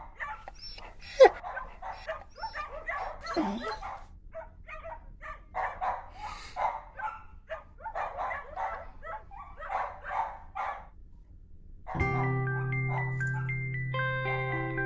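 A puppy barking, yipping and whimpering in quick short calls, with one sharp, loud yelp about a second in. The calls stop near the end, and gentle mallet-percussion music with chiming notes begins.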